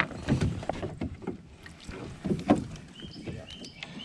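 A hooked warmouth sunfish splashing at the water's surface as it is reeled in and swung aboard a small boat, with irregular knocks and bumps against the hull.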